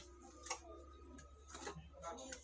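Faint scraping of a putty knife spreading skim coat across a rough wall, with two short, sharper scrapes about half a second in and near the end, over a steady low hum.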